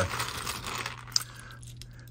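Small hard-plastic Lego minifigure pieces clattering and rattling as a hand rakes through a loose pile of them, with one sharp click a little after a second in, then quieter.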